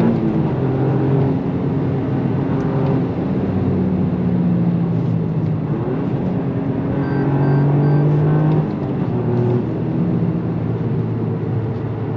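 Toyota GR Yaris's turbocharged three-cylinder engine heard from inside the cabin while driving, its note rising and falling with throttle and gear changes over tyre and road noise. The engine sound drops back about eight and a half seconds in.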